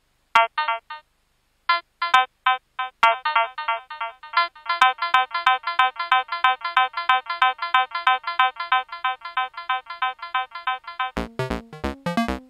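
Pure Data synthesizer sequence of short, beep-like pitched notes, sparse at first, then a fast even run of notes from about three seconds in. Near the end a low drum sequence comes in under it.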